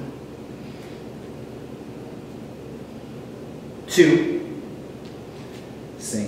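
A man's short, sharp voiced exhale about four seconds in, loud and fading over about half a second, over a low steady room hum.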